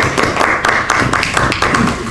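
Applause: a small group of people clapping steadily, many quick irregular claps.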